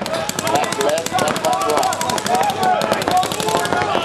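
Tournament paintball markers firing in rapid, continuous streams, many shots a second, with several guns overlapping. Voices call out over the fire.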